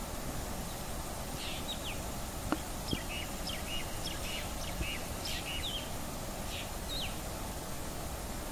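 Black drongo calling: a run of short, sharp chirping notes, many dropping quickly in pitch, from about a second and a half in until near the end, over a steady background hiss. Two brief clicks come about two and a half seconds in and half a second later.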